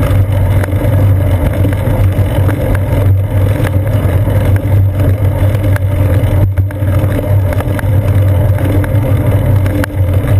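Wind and road noise on a seat-post-mounted GoPro Hero 2 in its housing while cycling: a loud, steady low rumble with a few faint ticks from bumps in the road.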